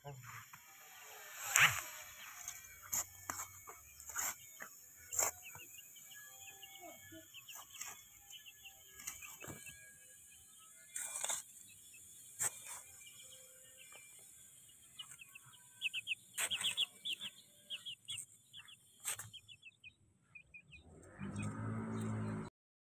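Young black chicks peeping, short high chirps coming in quick runs, with sharp clicks scattered throughout.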